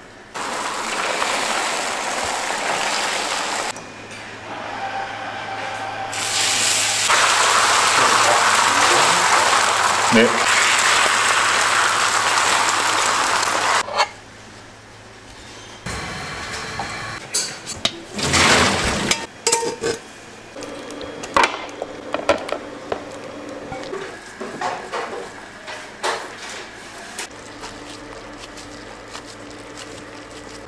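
Beaten egg sizzling loudly on a hot steel griddle for several seconds, followed by the clatter and sharp knocks of metal pans and utensils.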